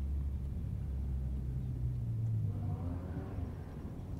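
Low rumble of a motor vehicle's engine on a road, steady and then fading about three seconds in.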